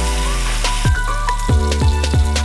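Chopped garlic and shallots sizzling in hot oil in a wok. Background music with a deep, falling bass beat plays over it, about three beats in two seconds.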